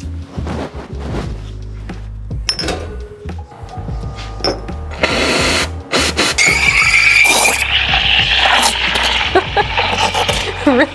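Espresso machine steam wand opened: a sudden loud hiss of steam about five seconds in, carrying on as a hiss with a high whistling tone.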